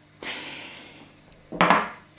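A mail riveting tool squeezing a rivet through a small metal mail link: light metallic clicking and scraping that fades out, then a louder, sharper sound near the end. Squeezed this way, the rivet ends up bent over on one side rather than set neatly.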